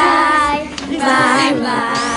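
Young children singing together, several high voices at once, with a brief dip a little past halfway.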